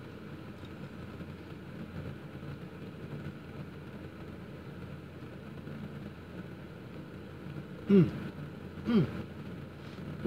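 Steady low background hum inside a vehicle cabin. A man gives a short appreciative "mmm" about eight seconds in and another about a second later.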